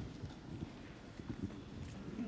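Irregular footsteps and low knocks of people moving about on a hard church floor.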